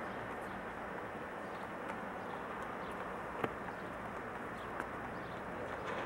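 Steady outdoor city background noise in an open stone plaza, with a few faint taps and one sharper click about three and a half seconds in.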